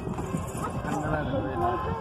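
Several people's voices calling out and talking over one another, over a steady low rumble and buffeting from a small boat moving across the water.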